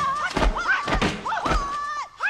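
Dubbed kung-fu film fight sound effects: a quick series of punch and kick thuds, about four in two seconds, with a high wavering tone running between the hits.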